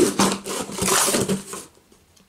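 Packing tape being picked at and peeled off a cardboard box, with scratchy tearing and rustling for about a second and a half before it stops.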